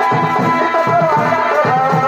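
Live chhau dance accompaniment: a wind instrument plays a wavering, sliding melody over steady drum beats.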